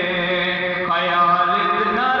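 A man singing devotional verse into a microphone in long, held notes, a new phrase beginning about a second in.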